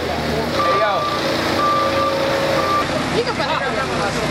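A vehicle's electronic warning beeper sounding three beeps about a second apart, over people talking.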